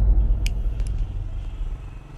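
A deep soundtrack rumble dying away steadily, with faint clicks about half a second and nearly a second in.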